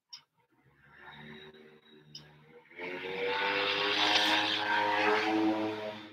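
A motor running with a steady pitched hum. It grows much louder about three seconds in, its pitch rising a little and then holding, and it stops just at the end. Two light clicks come before it.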